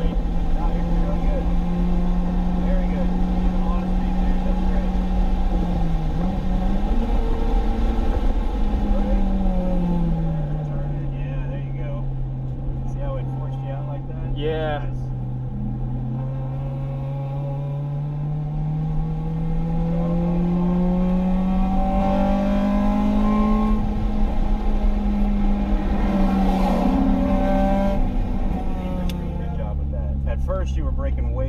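Acura RSX Type-S's K20 four-cylinder heard from inside the cabin at speed on track, with road noise under it. The engine note dips briefly about six seconds in and falls away between about eight and eleven seconds as the car slows. It then climbs slowly for several seconds and drops again near the end.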